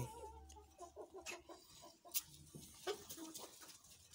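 Criollo chickens clucking softly as they gather to peck at a thrown handful of feed pellets, with a few sharp clicks.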